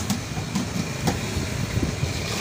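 Low, uneven rumble of street traffic, with two short clicks about a second apart.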